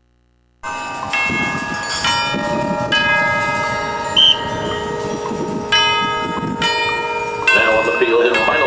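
Marching band's front ensemble sounding ringing, bell-like chords that shift to new notes about once a second, starting abruptly just under a second in.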